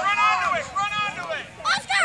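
High-pitched shouted calls from voices on the pitch, in three short bursts, with a brief break about halfway through and another near the end.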